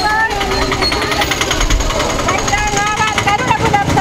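Women marchers chanting slogans together in high, raised voices, strongest in the second half, over a fast, even rattle.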